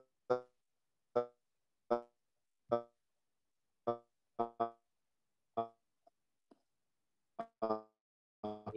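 A man's voice over a video call breaking up on a poor connection. Speech is chopped into about a dozen short, clipped fragments of syllables, each a fraction of a second long, with dead silence between them.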